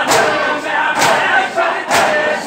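A crowd of men chanting a noha together in rhythm with matam: open hands slapping their chests in unison, a loud strike about once a second.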